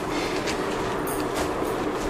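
A cotton saree being unfolded and handled on a table, the cloth rustling briefly a few times, over a steady mechanical hum.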